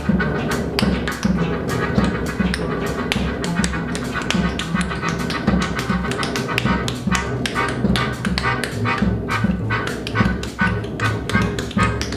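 Live free-improvised jazz: a melodica holds reedy chords over a low double bass line, with dense, irregular percussive taps.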